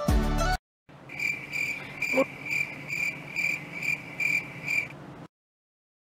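Outro music stops about half a second in. After a brief gap comes rhythmic cricket-like insect chirping, about two to three high chirps a second, for roughly four seconds before it cuts off.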